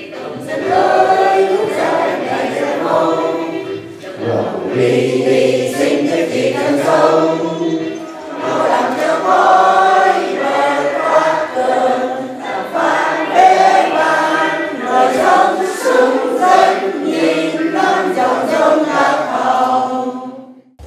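A standing group of men and women singing a national anthem together in unison, with short pauses between phrases.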